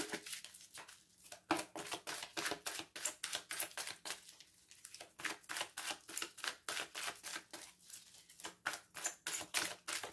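A deck of oracle cards being shuffled by hand, an overhand shuffle giving a quick, irregular run of soft card snaps, several a second, with short pauses.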